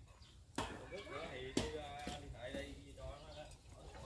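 A spoon stirring batter in a plastic bowl, knocking against the bowl with a few sharp clicks about once a second.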